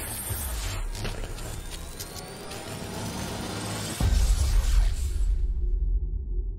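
Intro sting of cinematic sound-design music: a dense swell that builds, then a sharp hit with heavy deep bass about four seconds in, fading away near the end.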